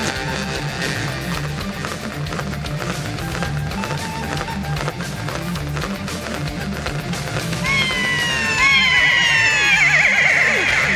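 A jaw harp twanging in a steady rhythm as music, over a low pulsing backing. Near the end a series of falling, sliding high calls comes in and the music grows louder.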